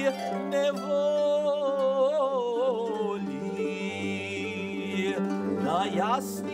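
A man singing a Ukrainian song with wide vibrato, accompanying himself on a large Ukrainian plucked string instrument of the kobza-bandura family whose bass strings ring on under the voice. A quick upward slide comes near the end.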